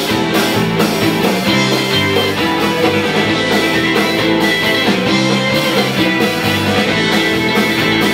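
Live Irish band playing an instrumental passage: banjo, acoustic and electric guitars and fiddle over a steady beat, with no singing.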